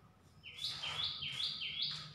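A bird calling: four quick two-note chirps in a row, each stepping up in pitch.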